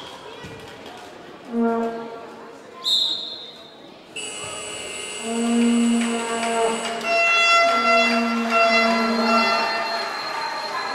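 Spectators' plastic fan horns blown in several long, held notes over the noise of a handball game in a reverberant sports hall. A short high whistle sounds about three seconds in.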